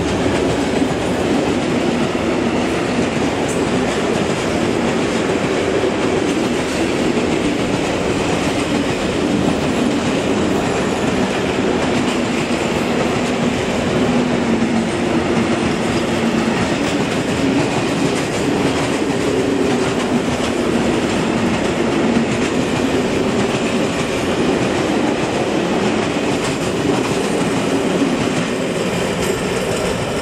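Freight train of open-top wagons passing close by, its steel wheels running over the rails in a steady, loud noise. It starts to fade near the end as the last wagons move away.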